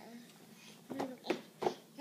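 Mostly quiet room tone, then a few short voice sounds and an adult coaxing a baby with "come on" near the end.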